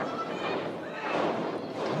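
Live crowd noise from a small audience in a hall: a steady murmur with a few faint voices calling out.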